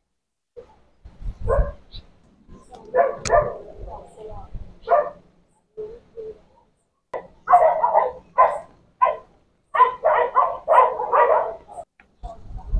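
A dog barking: a few scattered barks, then a rapid run of about two barks a second in the second half.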